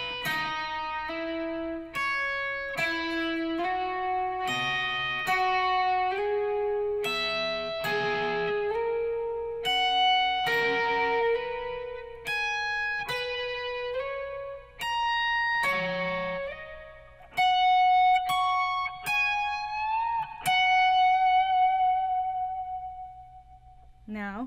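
Electric guitar with distortion on the bridge pickup, playing a lick in sixths slowly: two-note pairs picked one after another, climbing up the neck. It ends with a bend and a long held note with vibrato.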